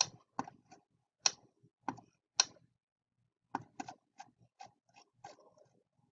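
Computer mouse buttons clicking: about a dozen short, sharp clicks at irregular spacing, with a pause of about a second near the middle.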